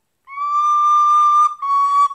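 German-fingered recorder playing a single melody line: after a brief pause for breath, a long held note, then a slightly lower note near the end.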